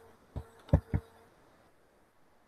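Three short clicks or taps within the first second, over a faint steady hum.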